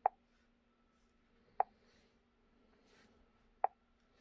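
Three short, sharp plops, right at the start, about a second and a half in and near the end, from taps on the touchscreen of a Launch X431 Pros Mini diagnostic scan tool as menu items are selected. A faint steady hum runs underneath.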